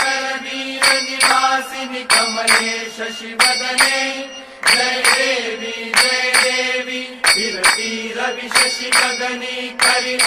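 Devotional aarti music for the goddess Mahalakshmi: a melody over a steady drone, with sharp percussion strikes about two a second.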